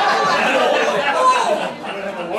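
Several people talking over one another at once: indistinct crowd chatter in a room.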